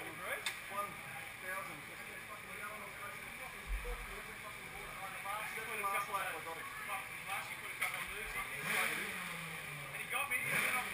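Indistinct talking, with no words clear enough to make out, and a single sharp click about half a second in.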